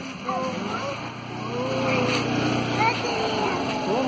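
Scooter engine running as the scooter rides up close, a steady low hum that grows louder about a second in and drops away near three seconds.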